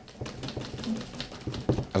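Irregular light clicks and knocks from a wooden desk as a smart speaker with a rubber non-slip base is pushed back and forth on it: the base grips, so the desk shifts instead. One louder knock comes near the end.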